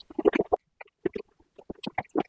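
Close-miked eating sounds: a quick run of crisp crunching bites and chews in the first half second, a short pause, then scattered lighter chewing clicks that pick up again near the end.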